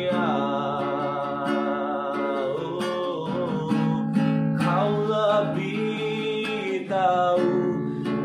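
A man singing long held notes with vibrato in Indonesian, accompanied by a strummed acoustic guitar.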